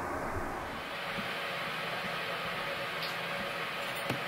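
Steady low background hiss with no speech, and one faint short click about three seconds in.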